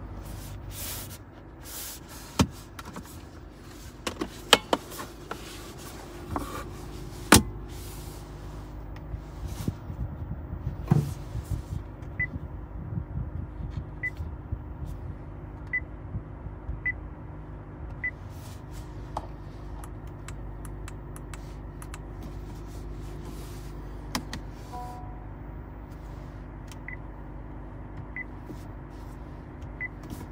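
Short high beeps from the 2020 Honda Insight's touchscreen infotainment display as it is tapped, one every second or two, over a steady low cabin hum. Earlier there are a few sharp clicks and knocks from the phone being handled.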